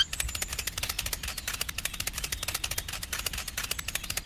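Tractor engine running: a rapid, even clatter of about fifteen beats a second over a low rumble, which starts suddenly and keeps a steady pace.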